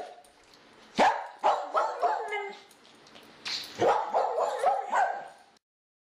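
A dog barking and yipping in short bursts, in several clusters, with the sound cutting off abruptly near the end.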